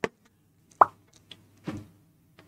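A few short, separate clicks and a pop: the tap and click of a stylus writing on an interactive whiteboard screen. One sharp click comes at the start. A louder pop with a brief ring comes a little under a second in, and a softer knock follows near the end.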